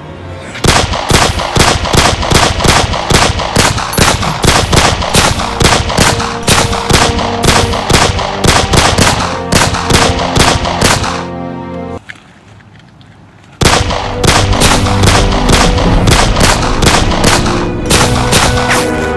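Rapid gunshot sound effects, about three to four shots a second, over music with steady tones. The shots break off for about a second and a half near twelve seconds in, then start again.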